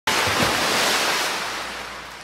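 Whoosh sound effect for an animated logo intro: a rush of noise that starts abruptly with a low thud just after the start, then fades away steadily.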